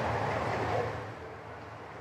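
Steady background hiss with a low hum between two speakers, fading down over the second half.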